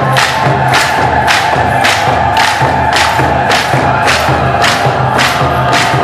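Eritrean Orthodox mezmur (spiritual song) sung by a group of voices over a steady beat of about three strokes a second.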